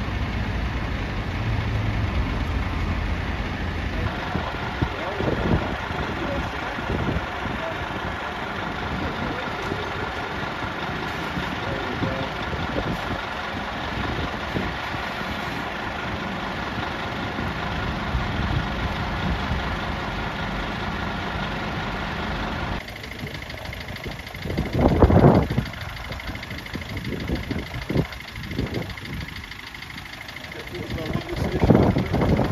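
Diesel engines of parked fire appliances idling in a run of short clips: a Volvo aerial appliance, then a Scania P280 pumping appliance, then a Mercedes Sprinter van whose idle is quieter. A brief loud knock comes near the end, during the van clip.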